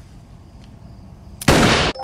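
A single revolver shot, sudden and loud about one and a half seconds in, cut off short about half a second later, after a stretch of quiet room tone.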